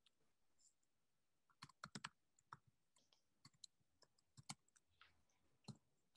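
Faint, scattered clicks at a computer, like keys or a mouse being pressed. They come in a quick run about two seconds in and then keep on irregularly, with near silence between them.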